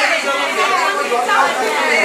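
Several people talking over one another at once, a steady chatter of overlapping voices.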